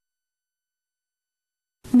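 Complete silence, a dead gap in the soundtrack; a voice begins speaking right at the end.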